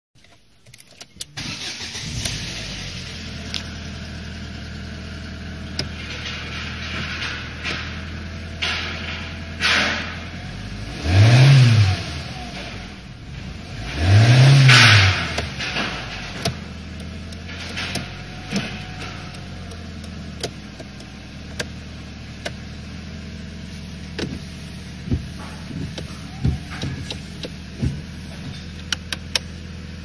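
Ford Mondeo II's 1.8-litre Zetec petrol four-cylinder engine starting about a second in and settling to a steady idle. It is revved twice briefly, rising and falling, then idles again, with a few light clicks near the end.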